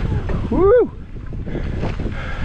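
Low rumble of wind and tyres on a dusty dirt trail as a mountain bike descends, with a short whoop about half a second in whose pitch rises and then falls.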